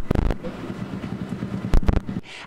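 A heavy thump, then a steady low rumble, then two more heavy thumps in quick succession near the end.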